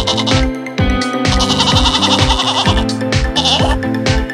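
Sheep bleating sound effect over electronic dance music with a steady kick drum: one long bleat a little over a second in and a shorter one near the end.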